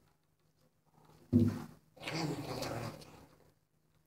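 A sudden loud sound about a second in, then a long, loud wordless vocal sound from a young woman lasting about a second and a half.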